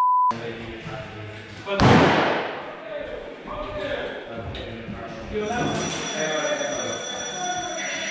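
A short flat beep at the very start, with all other sound cut out: an edited-in censor bleep. About two seconds in comes a loud thump, followed by faint voices and, from about five seconds in, steady high tones.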